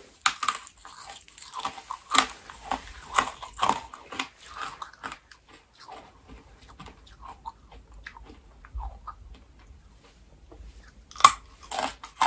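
Close-miked crunching and chewing of brittle dalgona, Korean sugar honeycomb candy. Sharp cracks come thick and fast for the first few seconds, then softer chewing, and a loud crunch comes about a second before the end.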